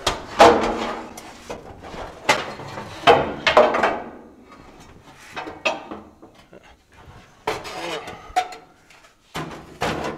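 A steel dash panel being handled and worked into place inside an old car body: irregular knocks and scrapes of sheet metal against the body, some with a short ring, loudest in the first second and around three to four seconds in.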